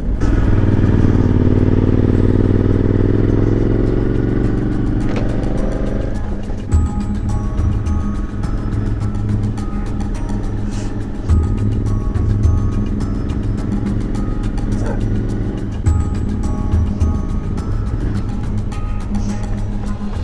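Suzuki V-Strom motorcycle engine running while riding, its pitch easing down slowly over the first few seconds. Background music with a repeating melody comes in about six seconds in, over the engine.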